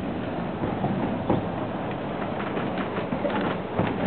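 Durango & Silverton narrow-gauge passenger train rolling along the rails, heard from aboard: a steady running rumble with a few sharp clicks from the wheels and cars.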